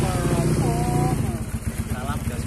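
A dirt bike's engine idling steadily, a fast even run of firing pulses, with a man's voice talking over it in the first second.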